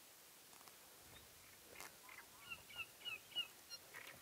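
Faint bird calls: a quick series of about six short, pitched notes in the second half.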